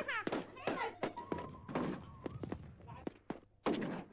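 People talking, with several short, sharp knocks or thuds between the words.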